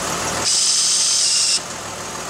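Electric shift actuator on a Dodge Nitro's NP143 transfer case running for about a second, a high-pitched whir that starts and cuts off abruptly, over the engine idling. The actuator is moving unloaded, pushing nothing, because the transfer case shift button is stuck.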